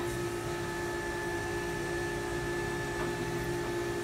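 Steady machine hum: a constant low drone with a fainter high whine above it, unchanging throughout, and one faint click about three seconds in.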